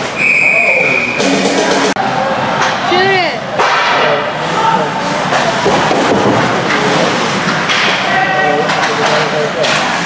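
Ice hockey referee's whistle blown once at the start, one steady high note about a second long, over a scramble at the net. Overlapping shouting voices fill the rest of the time, echoing in the rink.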